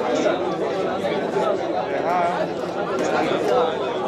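Dense, overlapping babble of many men's voices studying Torah aloud in pairs in a yeshiva study hall (beit midrash), holding at a steady level.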